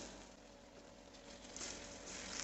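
Faint, steady sizzle of masala frying in oil in a pan, getting a little louder near the end.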